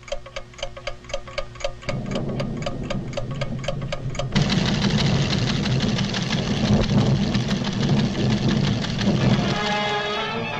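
Cartoon sound effect of a seismograph's clockwork ticking rapidly and evenly, about seven ticks a second. About two seconds in, a low rumble joins it. About four seconds in, the rumble swells into a loud, dense rumbling that covers the ticking, as the instrument shakes with a volcanic tremor.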